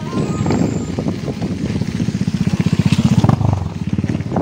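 Small engine running with a fast, even beat, growing louder to a peak near the end.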